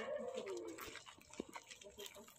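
A dove cooing: one low coo that falls in pitch over the first second.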